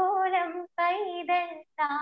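A young woman singing solo and unaccompanied over a video call, holding long, gently ornamented notes, broken by two short pauses near the middle.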